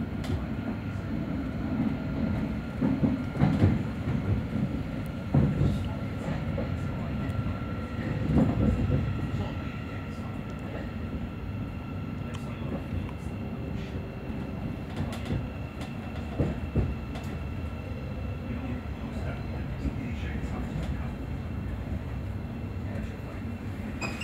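Cabin noise of a Thameslink Class 700 electric multiple unit on the move: a steady low running rumble with irregular knocks from the wheels and track, and a faint steady whine above it.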